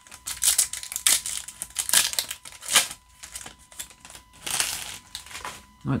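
Foil trading-card booster pack wrapper being opened in the hands, crinkling in a run of irregular crackly bursts.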